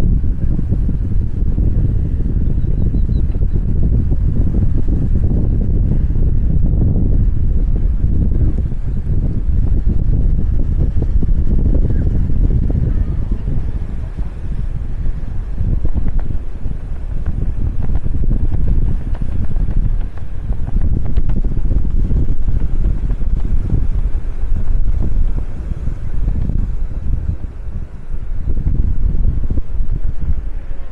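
Wind buffeting the microphone: a loud, gusting low rumble that swells and eases unevenly.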